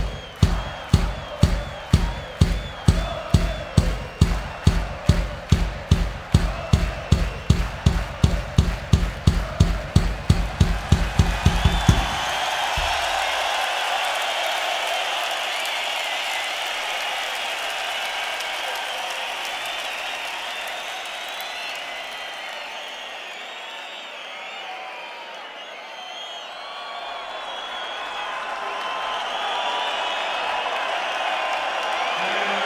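Large rock-concert crowd over a steady kick-drum beat of about three hits a second. About twelve seconds in the drum stops suddenly, and the crowd goes on cheering and applauding.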